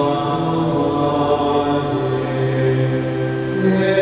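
Slow liturgical chant sung in long held notes, the pitch moving only every second or two.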